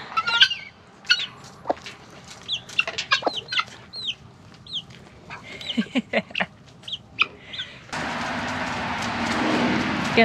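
Baby chick peeping: a string of short, high peeps, each sliding down in pitch. About eight seconds in, a steady rushing noise starts abruptly.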